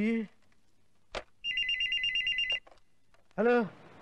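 Telephone ringing: a single steady electronic ring about a second long, just after a sharp click.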